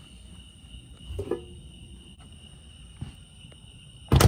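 Damp laundry being handled and loaded back into a front-load washer-dryer drum: soft fabric rustling, with a brief knock about a second in and a small click near three seconds.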